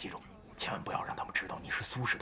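A man speaking in a whisper, several breathy syllables.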